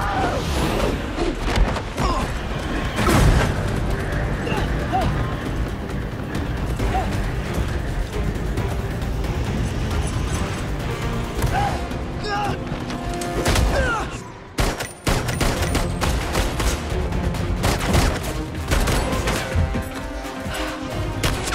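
Action-film soundtrack: score music mixed with dense sound effects, many sharp bangs and impacts over a steady rushing bed. About fourteen and a half seconds in the sound briefly drops away, then comes back with hard hits.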